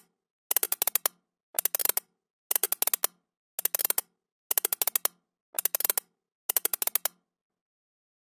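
Rapid mechanical clicking sound effect in bursts: about one half-second burst of fast clicks each second, seven in all, separated by dead silence and stopping about a second before the end.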